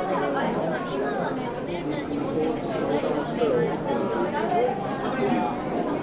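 Many people talking at once indoors: a steady hubbub of overlapping voices with no single clear speaker.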